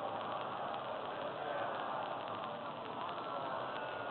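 Steady background hiss and room noise with no speech, even and unchanging throughout.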